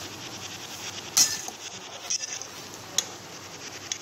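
Metal spatula stirring and scraping desiccated coconut as it dry-roasts in a steel kadhai, with sharp clinks of metal on the pan, the loudest about a second in and another at three seconds.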